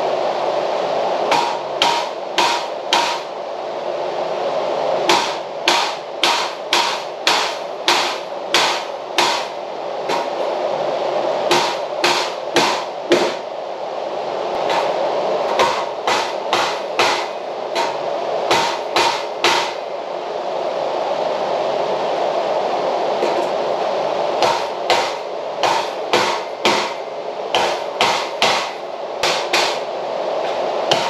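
Hammer striking wood framing at the top of a pocket-door rough opening. The blows come in runs of several strikes about two a second, with pauses of a few seconds between runs.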